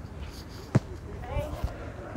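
A single sharp tap about three-quarters of a second in, then two dull low thumps, over faint distant voices and a low outdoor background.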